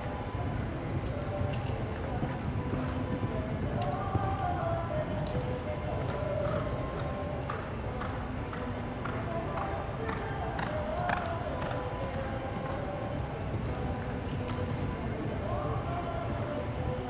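Hoofbeats of a Thoroughbred horse cantering on arena dirt, over background music.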